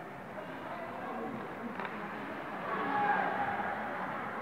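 Ice hockey arena ambience: a steady hum of hall noise with scattered spectator voices, one sharp knock about two seconds in, and a louder voice calling out near the end.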